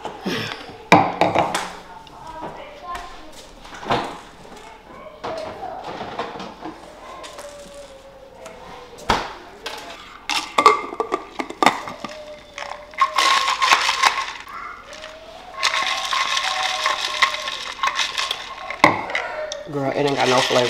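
A plastic tumbler, its lid and straw being handled: a run of sharp clicks and knocks, with two longer rushing stretches, one near the middle and one toward the end.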